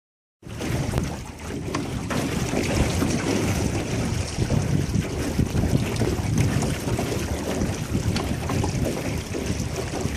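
Wind buffeting the microphone over the rush of water past a small aluminium boat's hull as the boat moves across the water, a steady gusty rumble that starts abruptly just under half a second in.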